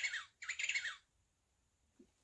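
Recorded penguin call from an electronic sound book's penguin button, played through the toy's small speaker: two short calls, each falling in pitch, in the first second.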